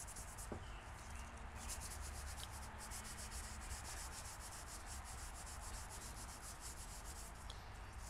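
Scotch-Brite abrasive pad scrubbing a chrome golf iron head, a faint steady scouring noise as it takes off surface rust.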